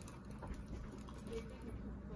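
Quiet room hum with a few faint soft clicks as thick acrylic paint is mixed by hand in a small plastic cup.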